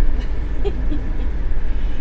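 Steady low rumble of engine and road noise inside the cab of a moving motorhome.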